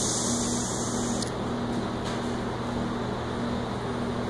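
Short hiss of compressed air bled from the air fork's low-pressure chamber as a tool presses its valve, cutting off about a second in. A steady low hum of shop machinery runs underneath.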